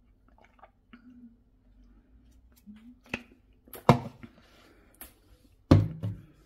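A person chewing close to a phone's microphone, with soft scattered mouth clicks and squishes. It is broken by a few sharp knocks, the loudest about four seconds in and again near the end.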